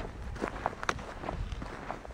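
Footsteps on dry sandy desert ground: irregular short scuffs and crunches, several a second, over a steady low rumble.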